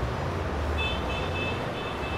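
A low steady rumble, with a faint high-pitched tone of several notes held together coming in about a second in and lasting to the end.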